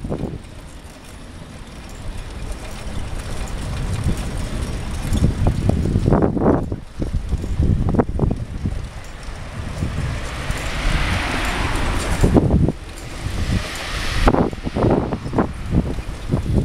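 Wind buffeting the microphone of a camera on a moving bicycle, in low, uneven gusts, over the sound of road traffic alongside; a steadier hiss rises from about ten seconds in and fades after about fourteen.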